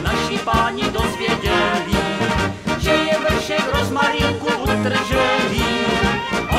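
Brass band music with a steady beat, trumpets and trombones carrying the tune.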